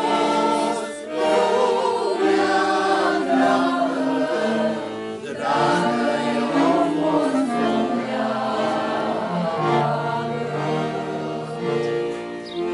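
Slow funeral song sung by a group of voices in long, held notes that glide from one pitch to the next.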